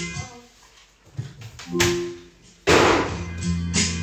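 Background music with a steady beat. It drops away for about two seconds, with a few knocks in the gap, then comes back loudly.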